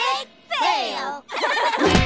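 Several cartoon girls laughing together in quavering bursts that slide down in pitch. Music starts right at the end.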